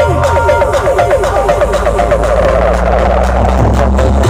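Loud electronic dance music played through a miniature horeg sound system of stacked speaker cabinets: a fast run of melodic notes over a deep, sustained bass.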